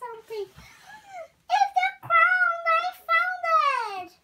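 A young girl's high voice making drawn-out sung play sounds without clear words, ending in a long falling glide.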